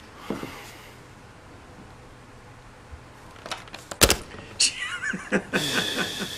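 Drama soundtrack: a man sighs just after the start, then a few sharp clicks about three and a half to four seconds in, the last the loudest, followed by voices talking near the end.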